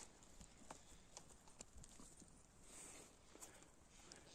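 Near silence: faint scattered clicks and a soft rustle, about three seconds in, of a hand working in the moss and pine needles at the base of a porcini mushroom.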